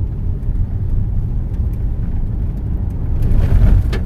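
Inside the cabin of a Toyota 4Runner driving a washboard gravel road: a steady low rumble from the tyres and suspension, swelling louder briefly near the end.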